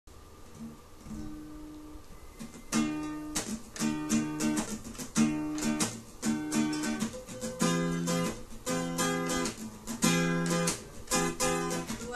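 Acoustic guitar played solo: a few soft notes, then rhythmic strummed chords from about three seconds in, moving to a new chord about halfway through.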